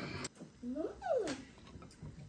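A brief vocal sound that rises and then falls in pitch, with a light tap near the start.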